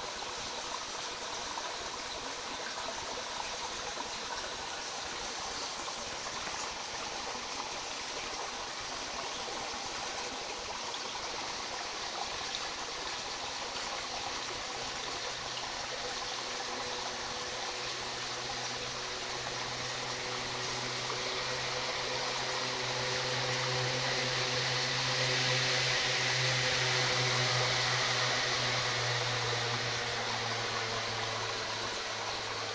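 Creek water running steadily, picked up by a camera held underwater. A low steady hum joins about halfway through and grows louder toward the end.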